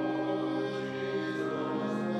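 A hymn sung by voices over sustained organ accompaniment, with the singing coming in strongly about a second in.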